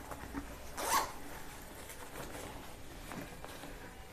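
The zipper of a blower's fabric dust-collection bag is pulled in one short rasp about a second in, followed by a few faint rustles of the cloth bag being handled.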